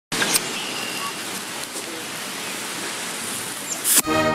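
Bottle rocket's lit fuse hissing steadily, then the rocket launching out of a glass bottle with a loud rush just before the end.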